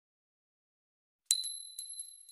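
Silence, then past the middle a metal coin strikes a hard surface with a bright ring and a few quick bouncing clicks as it settles.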